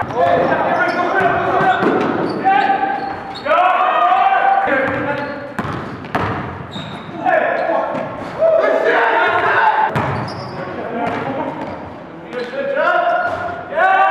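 Live sound of an indoor basketball game: a basketball bouncing on the gym floor, with players' voices calling out, echoing in a large hall.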